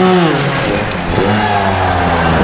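Sherco trials motorcycle engine blipped as the rider hops the bike up onto the blocks. A quick rev falls away in the first half second, then another rises about a second in and settles into a steady run.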